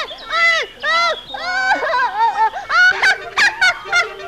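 High-pitched, wordless cartoon character voices: a quick run of short squawking calls and laughter, each rising and falling in pitch, with a few sharp clicks about three seconds in.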